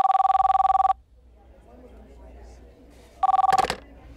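Desk telephone ringing twice with a trilling two-tone electronic ring. The first ring lasts about a second; the second, about three seconds in, is cut short with a click as the handset is picked up.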